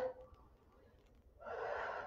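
A woman's audible breath during a calf-raise exercise, one breathy intake of about a second near the end after a quiet start.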